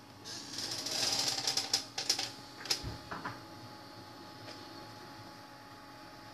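A fast run of small clicks and rustling for about a second and a half, followed by a few separate sharp clicks, over a faint steady hum.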